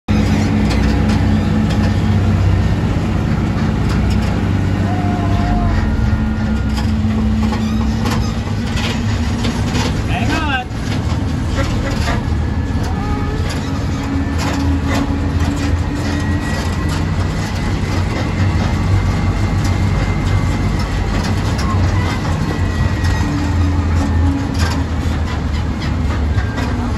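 Steady low running rumble of the High Park park train's engine and open passenger cars as the train moves along, with scattered clicks and rattles.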